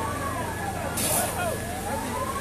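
Emergency vehicle siren wailing, its pitch rising and falling slowly, with a short sharp hiss about a second in.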